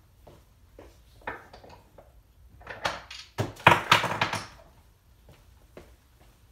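Clear acrylic stamping blocks being gathered and knocking together: a few light scattered knocks, then a louder run of clacks about three to four and a half seconds in.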